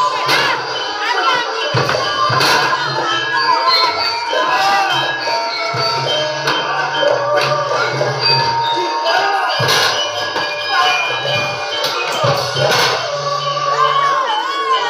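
Ketoprak gamelan music playing loudly for a stage fight: many short ringing tones at different pitches with frequent sharp drum strokes. A crowd of voices, with children shouting, runs over the music.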